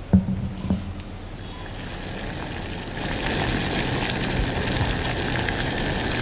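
Two sharp knocks in quick succession, then a steady rushing noise that swells in over a second or so and holds.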